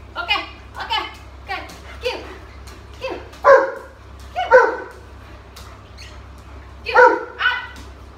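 A dog barking excitedly in a string of short, pitched barks. The loudest two come about three and a half and four and a half seconds in, and after a pause there are two more near the end.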